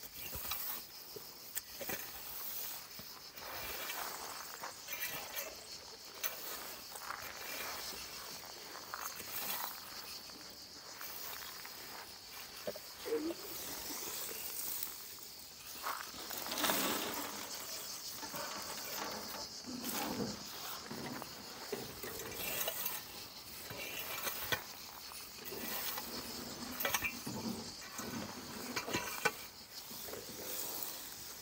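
A rake scraping dry pine needles across dirt ground in repeated irregular strokes, gathering them up to go into a wheelbarrow.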